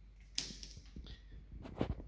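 A few faint clicks and soft knocks: one sharp click about half a second in and a quick cluster near the end, over a low steady hum.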